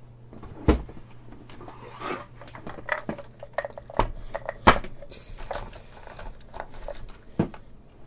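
Off-camera handling noise: a run of knocks and clatters of objects being picked up and moved. The loudest is a sharp knock a little before the halfway point, with others about a second in and near the end, over a faint low hum that fades about halfway.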